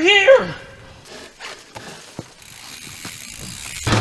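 A man's drawn-out wordless vocal cry with a wavering pitch, the loudest sound, then irregular clicking and ticking of a mountain bike's freewheel and drivetrain as it is ridden off, with rising noise from the tyres on the trail. Loud rock music starts near the end.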